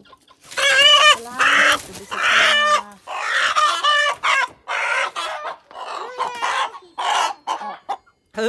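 Rooster squawking in a rapid string of loud alarm calls as it is grabbed and lifted out of a bamboo basket, loudest in the first three seconds.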